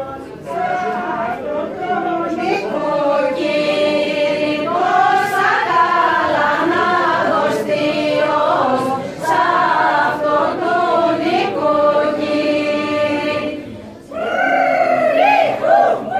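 A mixed group of men's and women's voices singing a Thracian Christmas carol (kalanta) together, in long held phrases with short breaks between them; a loud new phrase starts near the end.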